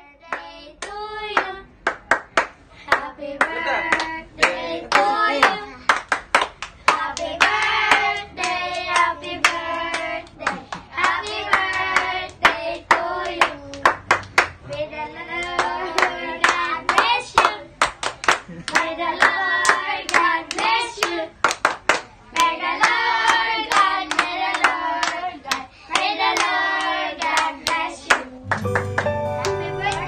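A small group singing a birthday song together while clapping along in a steady beat.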